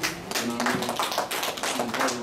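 A small group of people clapping: a quick, irregular scatter of sharp claps.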